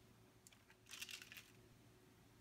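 Near silence, with a faint, brief rustle of baking paper about a second in as a hard-candy lollipop is peeled off it.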